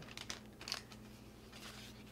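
Faint rustle and a few light ticks as a thin protective cover sheet is lifted off a laptop keyboard, mostly in the first second.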